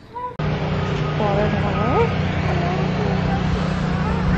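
Steady low hum of an idling vehicle engine close by, cutting in abruptly about half a second in, with faint voices in the background.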